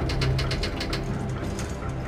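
Rapid, even clicking at about six or seven a second over a steady low hum, from the TV episode's soundtrack.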